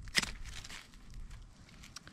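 Bypass hand pruners snipping once through a hardwood grape cane: one sharp snap just after the start. Faint rustling and crackling of the woody cuttings being handled follow.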